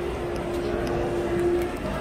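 Mitsubishi elevator car departing in its shaft behind closed doors: a steady hum with one held tone that stops shortly before the end, over a low background rumble.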